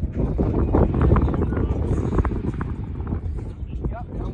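Wind rumbling on the microphone, with irregular thuds and scuffs of feet moving on artificial turf.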